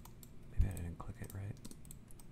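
Computer keyboard keystrokes: scattered short, sharp clicks as commands are entered.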